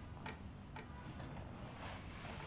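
Faint, regular clicks, about two a second, over a low steady hum.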